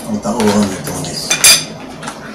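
Metal spoons and forks clinking and scraping against a ceramic plate and plastic food trays while eating, with a sharp ringing clink about one and a half seconds in, the loudest sound. A short hummed "mm" comes at the start.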